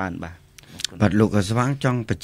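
A man speaking Khmer into a studio microphone, with a short pause about half a second in that holds two faint clicks.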